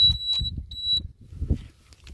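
Two high-pitched electronic beeps from a Hero Vida V1 Pro electric scooter as it is switched on. The first beep lasts about half a second and the second is shorter.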